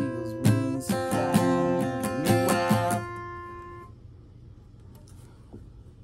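Acoustic guitar chords strummed about twice a second. The strumming stops about three seconds in and the last chord rings out for about another second.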